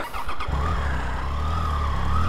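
Triumph motorcycle engine coming in about half a second in and running steadily at low revs, a deep even rumble with a thin held whine above it.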